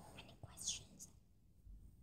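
Near silence, broken by one faint whispered, breathy sound a little over half a second in.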